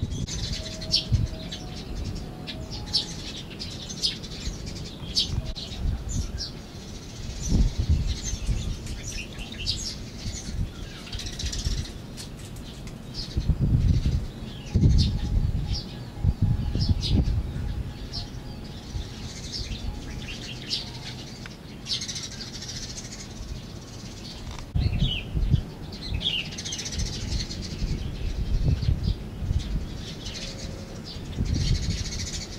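Small birds chirping all through, in many short high calls, several a second at times. Now and then low rumbles come in on the microphone.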